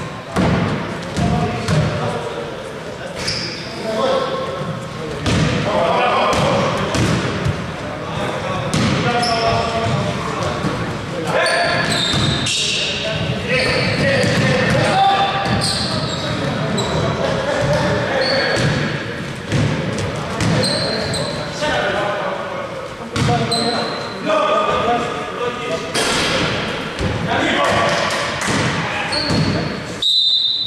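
Basketball game sounds in a large gym hall: the ball bouncing on the hardwood floor, repeated short high sneaker squeaks, and voices calling out on court.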